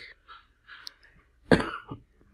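A person coughing once, briefly, about one and a half seconds in, with faint breathy sounds before it.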